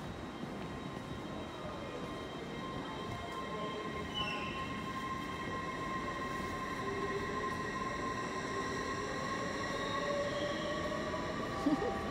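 A train moving at the station, heard as a steady rumbling noise with several held whining tones that slowly glide in pitch, gradually getting louder. A brief clunk sounds near the end.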